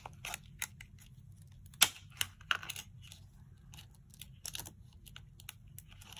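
Thin metal craft cutting dies being pried loose with a flat metal spatula tool: scattered light clicks and ticks of metal against metal and against the cutting mat, the sharpest about two seconds in.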